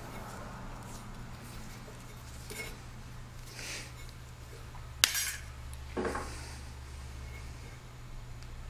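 Faint handling sounds of electrical tape being wrapped around a bulb's wire terminal: a couple of short rasps, a sharp clink about five seconds in, and a brief squeak a second later.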